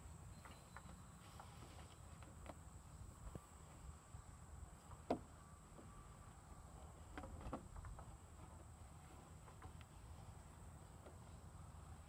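Near silence with faint scattered knocks from a cadet's hands and boots on the wooden beams of a weaver obstacle as he climbs over and under them; one sharper knock comes about five seconds in. A faint steady high whine and low rumble sit underneath.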